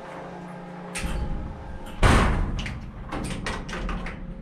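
Door of a tall metal ozone-sanitizing cabinet pushed shut: a click about a second in, then a loud thud as it closes about halfway through, followed by a quick run of clicks as the handle is latched.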